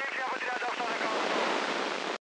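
Weak narrowband FM two-way radio transmission on the Greek emergency-service channel, mostly hiss and static with a faint, garbled voice in the first second.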